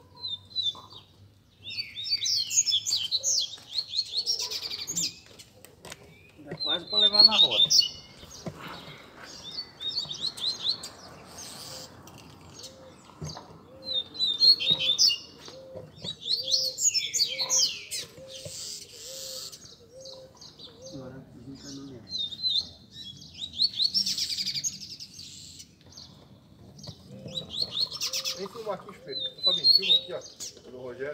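Caged double-collared seedeaters (coleiros) singing in turn, short fast twittering phrases coming every few seconds from several birds. Males are answering one another in a singing circle, warming each other up to sing.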